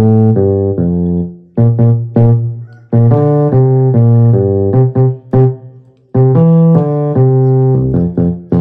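Yamaha portable keyboard on its electric piano voice playing a bass line on the low keys: held notes in four short phrases with brief breaks between them.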